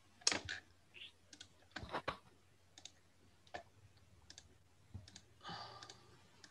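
Faint, irregular clicks of a computer mouse and keyboard picked up by an open video-call microphone, about a dozen scattered taps, with a brief soft rustle near the end.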